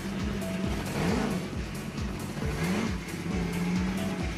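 Dodge Tomahawk's V10 engine running, revved twice: the pitch rises and falls about a second in and again about two and a half seconds in. Music with a steady beat plays underneath.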